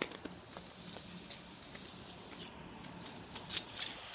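Quiet outdoor background with a small click at the start and a few faint ticks and light rustles.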